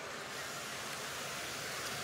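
Steady background din of an indoor competition arena, the crowd in the stands and the activity on the field blended into an even hiss, with no single event standing out.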